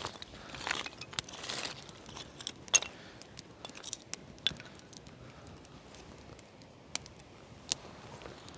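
Wood campfire crackling, with sharp irregular pops from the burning split kindling, the loudest a little under three seconds in. A soft rustle of movement in the first couple of seconds.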